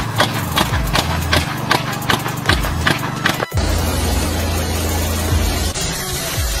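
Large impact sprinkler gun clicking rapidly, about two and a half sharp ticks a second, over the noise of its water jet. The clicking stops abruptly about three and a half seconds in and a steadier spraying noise takes over.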